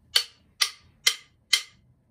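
Four-beat count-in: four sharp, evenly spaced clicks, a little over two a second, counting the band in before a drum demonstration.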